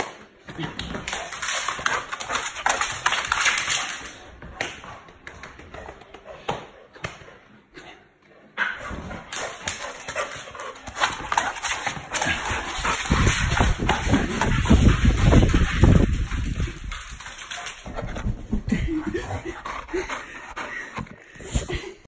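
A Chow Chow dog playing rough at close range: its vocal noises over steady scuffling and movement. A loud low rumble runs through the middle for several seconds.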